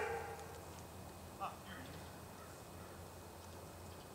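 A person's voice trailing off at the start, then mostly quiet woods, with one short faint voice-like sound about one and a half seconds in.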